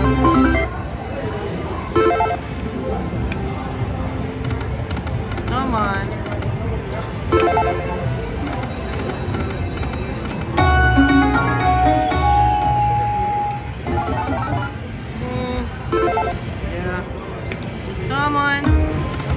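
Aristocrat Dragon Link 'Panda Magic' slot machine's electronic game sounds: jingles, rising chirps and chimes as the reels spin and small wins pay out, with a louder run of held tones about ten seconds in. Casino floor din of other machines and voices underneath.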